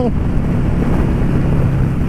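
Honda Shadow 600's V-twin engine running steadily while the motorcycle is ridden along the road, with wind rushing over the microphone.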